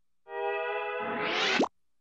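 Cartoon sound-effect sting: a steady held musical tone starts about a quarter second in, then swells into a rising glide that cuts off suddenly after about a second and a half.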